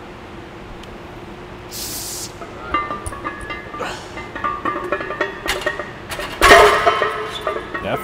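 Loaded steel barbell clanking down into the squat rack's hooks about six and a half seconds in, a loud metallic crash with ringing, after a run of smaller clinks and rattles from the plates and bar. A short hiss comes about two seconds in.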